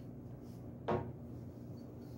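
Faint rubbing of a polishing cloth on a sword's steel cross-guard, with a single short knock about a second in.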